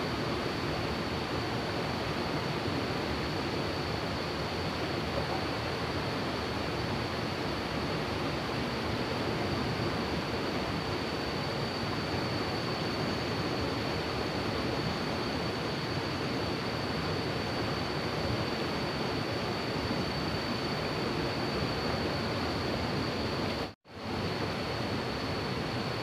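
River water rushing over rocks in fast-flowing rapids: a steady, even rush with a thin, steady high tone above it. The sound cuts out for a moment about two seconds before the end.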